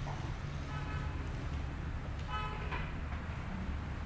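Two short vehicle-horn toots, about a second in and again past two seconds, over a steady low traffic rumble.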